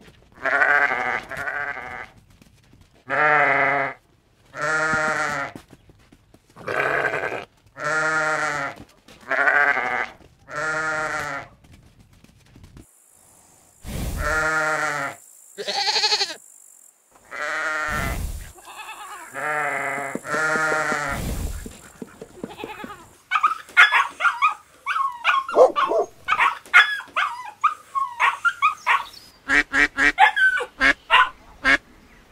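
Sheep bleating: a series of separate long, wavering bleats, with a few short thumps among the later ones. For the last seven seconds or so, a dense flurry of short, rapid calls from other animals takes over.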